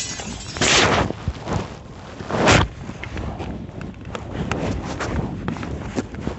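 Rustling and knocking of a phone being handled close to its microphone, with two louder bursts of rubbing noise, one under a second in and one about two and a half seconds in, followed by lighter clicks and rustles.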